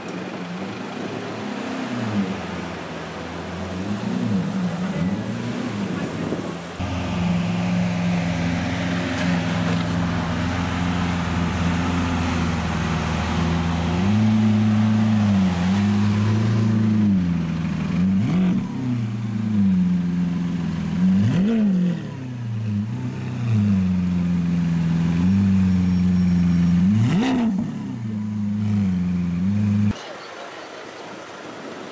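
Lamborghini Aventador V12 idling with a deep, steady note that grows louder a few seconds in, and three sharp throttle blips in the second half.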